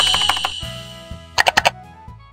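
Short end-card jingle fading out: a bright ringing tone dying away over low held notes, with soft typing-style clicks early on and a quick burst of four sharp mouse-click sound effects about a second and a half in.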